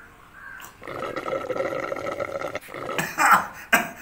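A man belching, one long drawn-out burp lasting about two seconds after gulping water, followed by two short sharp vocal bursts near the end.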